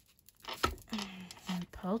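A short scratchy rustle of yarn being drawn through knitted stitches with a yarn needle, about half a second in, as the knitted ball is gathered closed; a woman's voice follows.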